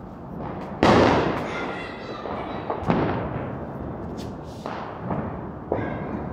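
Firecrackers bursting: one loud bang about a second in with a long fading echo, another sharp bang about two seconds later, then several smaller, more distant pops.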